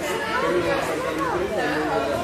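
Background chatter: several people's voices talking over one another.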